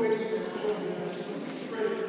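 Speech only: a man talking, indistinct.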